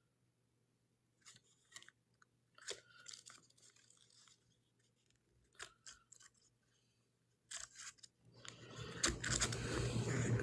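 Faint, scattered crackling and crunching noises close to the microphone, growing into a louder, denser stretch of crunching over the last two seconds.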